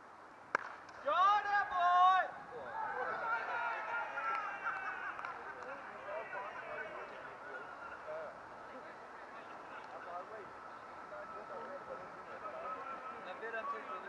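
A single sharp crack of the cricket ball, then several fielders shouting a loud appeal together for about a second, followed by excited calling as they celebrate a wicket.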